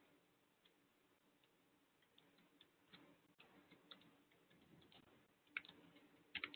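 Near silence: room tone with a few faint, scattered clicks, the loudest cluster near the end.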